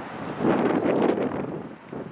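Wind buffeting the microphone: a rushing gust that swells about half a second in and dies down near the end.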